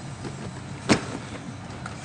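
A single sharp knock about a second in, over low rustling handling noise as makeup items are moved about.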